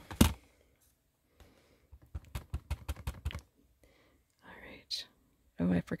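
A plastic ink pad set down on the desk with a single knock, then about two seconds in a quick run of light taps as a clear acrylic stamp block is dabbed onto the ink pad to ink it.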